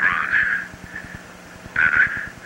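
Crackly, narrow-band space-to-ground radio transmission from the Moon landing: garbled bursts of radio sound through static, over a steady low hum and small clicks. The bursts are loudest at the start and again near the end.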